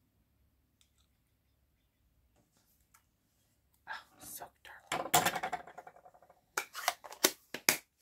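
Near silence while a clear stamp on an acrylic block is pressed onto card stock. From about four seconds in comes a quick run of sharp clicks and rustles as the stamp block and small craft tools are handled on the desk, mixed with soft whispering.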